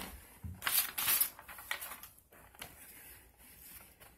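A sheet of paper rustling and crinkling in a few short bursts as it is handled and moved aside, then faint handling rustles.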